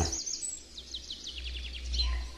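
Songbird ambience: a bird giving a quick run of short, high chirps, each falling in pitch, over a steady low rumble.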